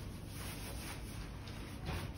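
Faint rustling of a disposable glove being pulled on over the hand, over a steady low room hum, with a slightly sharper rustle near the end.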